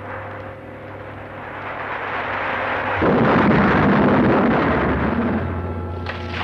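A bomb exploding as a film sound effect: a sudden loud blast about three seconds in that rumbles on for a couple of seconds, over orchestral background music.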